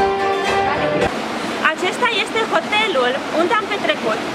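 Live Greek taverna music on bouzouki and keyboard, held notes cut off abruptly about a second in. After the cut, a woman's voice over a steady rushing noise.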